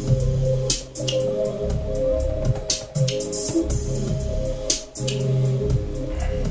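Electronic beat played from a grid pad controller: a low bass line under held synth chords, with sharp drum hits every second or two.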